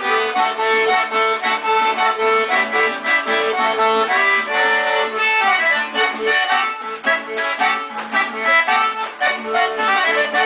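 Accordion playing a dance tune, its melody and bass notes going steadily throughout.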